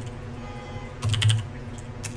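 Typing on a computer keyboard: a quick run of about half a dozen keystrokes about a second in, over a steady low hum.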